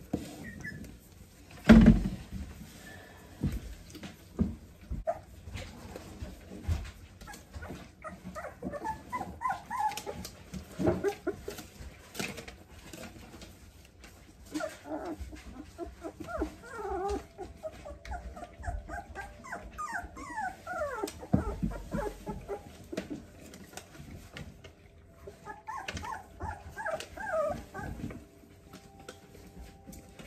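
Four-week-old Australian Labradoodle puppies whimpering and squeaking in many short high cries while they feed from a metal bowl, with scattered clicks and knocks and one louder thump about two seconds in.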